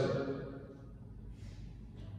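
Pause in a man's speech through a microphone: his voice's echo fades over the first half second, leaving quiet room tone with a steady low hum.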